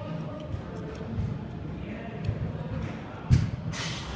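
An indoor soccer match echoing in a large hall: a steady murmur of players' and spectators' voices, with one sharp thump of the ball being struck a little after three seconds in.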